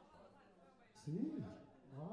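A man's voice over the PA, quiet talk first, then two loud drawn-out calls that rise and fall in pitch, about a second in and again at the very end.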